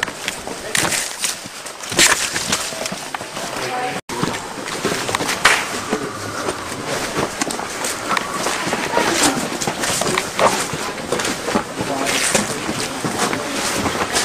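Indistinct voices of a group of people walking outdoors, with steady rustling noise and scattered short knocks throughout, and a brief dropout about four seconds in.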